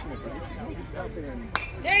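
A baseball bat hitting a pitched ball once, a sharp crack about one and a half seconds in, over faint voices of spectators.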